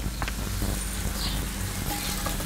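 Chopped red onion sizzling as it sautés in hot oil in a stockpot, stirred with a wooden spoon, over a steady low rumble.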